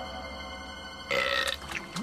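A cartoon lizard's burp about a second in, with a falling pitch, over soft background music.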